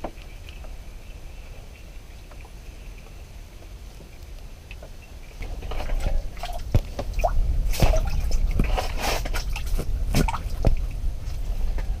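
A crappie being lifted out of an ice-fishing hole: water splashing and dripping, with a run of sharp clicks, knocks and rustling that starts about halfway through.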